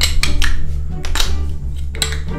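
Several sharp clicks and knocks of a lighter levering at the crown cap of a glass beer bottle without getting it open, over steady background music.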